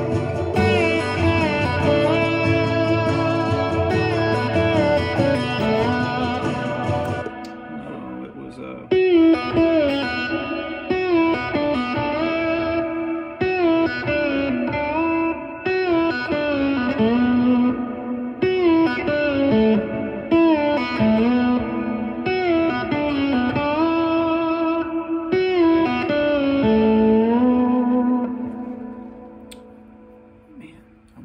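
Vintage Gibson ES-335 semi-hollow electric guitar played with a slide: a melodic solo in short phrases with notes gliding up and down between pitches. For the first seven seconds or so a fuller backing with bass sounds under it, then the low end drops away and the slide phrases carry on, fading out near the end.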